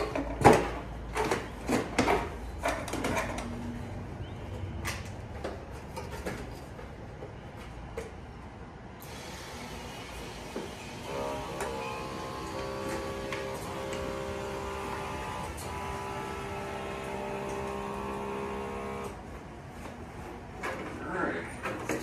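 Knocks and clatter as a man climbs into a homemade power-armor suit, then a steady electric hum of several held tones for about eight seconds, with a brief break midway, as the suit's powered parts run.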